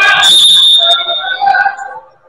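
A referee's whistle blown once, a high steady tone lasting about a second, over voices in the gym.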